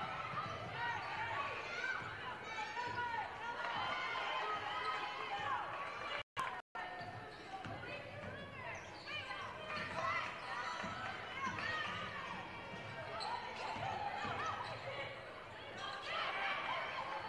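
Basketball game sound: a ball being dribbled on a hardwood court under a steady mix of player and crowd voices in the arena. The audio drops out twice for an instant about six seconds in.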